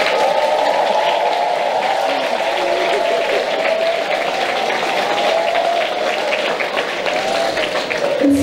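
Spectators applauding steadily throughout, with crowd voices mixed in underneath.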